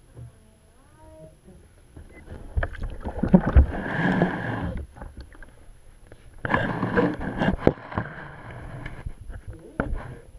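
Bathwater splashing and sloshing around a GoPro as a child plays with it in the tub, in two spells: one from about two and a half to five seconds in, and a shorter one from about six and a half to seven and a half seconds. Sharp knocks of the camera being handled come through the splashes and again near the end.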